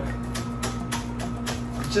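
Chef's knife chopping scallions on a plastic cutting board, a quick, uneven run of sharp taps, over the steady low hum of a running microwave oven.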